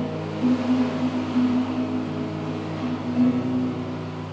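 Acoustic guitar strummed on one held chord a few times, the notes ringing on between strokes and gradually fading: the song's closing chord.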